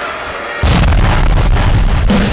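A TV promo bumper's heavy-rock music cuts in suddenly about half a second in, opening with a loud booming hit and a pounding drum beat.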